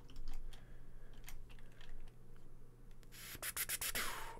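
Computer keyboard keys pressed now and then, with a quick run of key clicks near the end, over a low steady hum.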